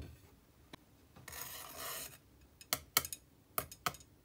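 A short scraping rub about a second in, then four sharp clicks in two quick pairs near the end as chopsticks tap together and against a ceramic plate.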